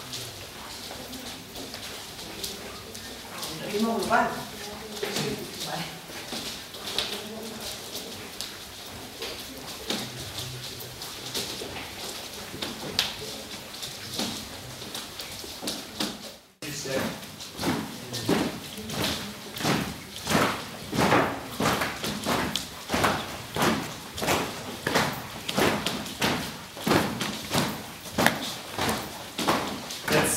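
Footsteps of a group of people walking on a wooden floor, scattered at first; from about halfway on, the steps fall into a shared, even beat of about two a second.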